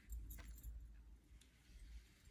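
Near silence with a few faint light clicks in the first second, from a small glass cup of paint being handled and set down on a table.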